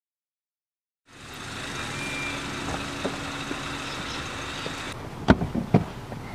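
Silence for about a second, then a steady hum of car and street traffic fades in. Near the end come three sharp clicks and knocks of handling inside a car.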